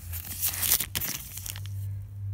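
Clear plastic parts bag crinkling and crackling as it is handled, for about a second and a half before it stops.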